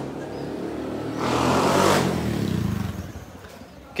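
A motor vehicle's engine passing by, growing louder to a peak about two seconds in and then fading away.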